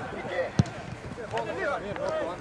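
A football kicked on a grass pitch: one sharp thud about half a second in.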